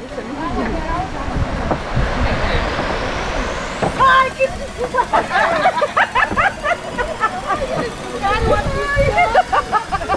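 People talking and calling out on a busy walkway, over a steady background rumble. The voices grow denser from about four seconds in.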